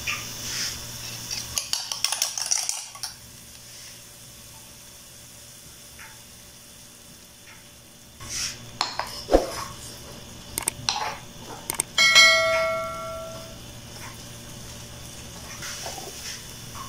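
Beaten egg being poured from a stainless steel bowl into hot oil in a frying pan: a hiss with clinks of a spoon against the bowl for the first few seconds. Later, utensils knock and scrape around the pan, and about twelve seconds in one metal clang rings out for over a second.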